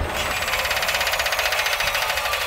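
A rapid, even mechanical rattle of many clicks a second, with little bass.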